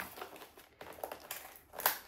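Wrapping paper rustling and crinkling as it is gently unfolded by hand, with a louder crinkle near the end.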